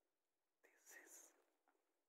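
Near silence, broken about halfway through by one short, soft whispery breath from a person close to the microphone.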